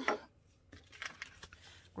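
Faint rustling of paper bills and a few light clicks from a glass jar being handled as money is taken from it.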